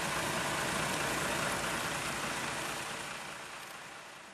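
Steady vehicle engine noise mixed with a broad rushing sound, fading away near the end.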